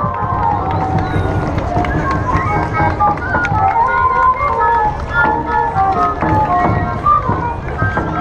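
Traditional parade-band music: flutes play a quick melody of short, stepped notes over a dense low rumble and scattered knocks.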